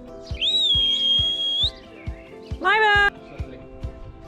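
Pionus parrot calling: a long, high whistled note held for just over a second, then about two and a half seconds in a short, brighter call that rises at its start, over background music with a steady beat.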